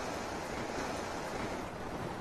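Steady wash of sea waves with wind, an even rushing noise.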